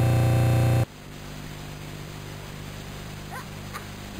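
A TV channel ident jingle ends on a loud held chord that cuts off abruptly under a second in, leaving a steady low hum from the tape recording with a few faint short rising squeaks near the end.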